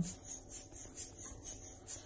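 A shaker keeping a soft, steady rhythm of about three scratchy strokes a second between sung phrases of a bossa nova.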